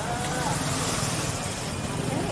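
Street traffic from a busy road: a steady rumble of passing cars and motorbikes, with people talking in the background.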